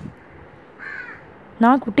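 A crow caws once, faintly, about a second in, against the quiet room.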